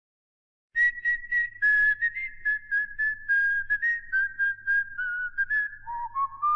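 A lone whistled melody: a string of short, clear notes that starts just under a second in and steps gradually downward in pitch, over a faint low hum.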